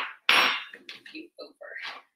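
Metal fork clanking against a metal baking sheet while crimping pastry edges: one sharp clatter about a quarter second in, followed by fainter taps and scrapes.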